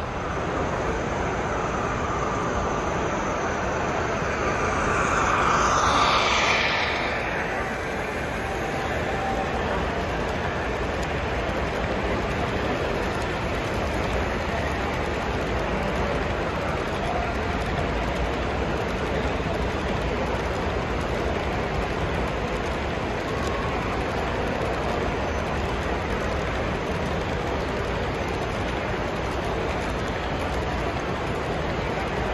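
Model railroad coal train of hopper cars rolling past close by: a steady rolling rush of wheels on track. About five seconds in, a louder sound swells as something passes close, falling in pitch before it fades.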